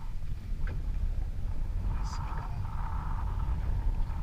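Steady low rumble aboard a small fishing boat at sea, with a faint voice about two seconds in.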